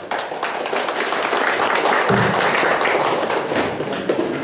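A group of people applauding, many hands clapping steadily together.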